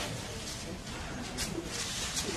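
A bird calling, with faint voices in the background.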